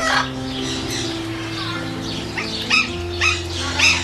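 Short, sharp bird calls over soft background music with sustained notes; three louder calls come in the last second and a half.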